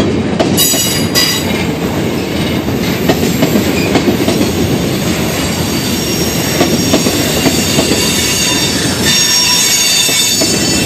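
Freight train cars rolling past close by: a steady rumble and clatter of steel wheels on the rails, with a thin, high-pitched wheel squeal briefly about a second in and again near the end.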